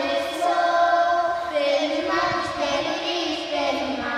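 A group of children singing together, unaccompanied, in long held notes, as part of a children's singing game.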